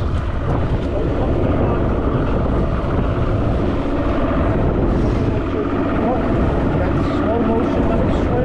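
Mercury OptiMax two-stroke outboard motor running steadily.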